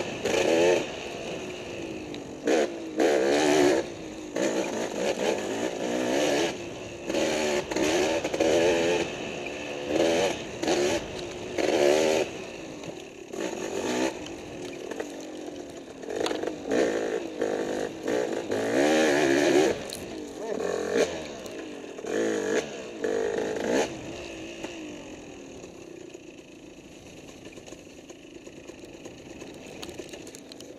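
Dirt bike engine revving up and down in short bursts of throttle, with scattered knocks and rattles from the bike over rough ground. Over the last few seconds the engine settles to a lower, quieter run.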